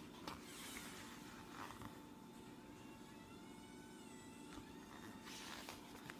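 Near silence: quiet room tone, with a faint, high, wavering sound in the middle.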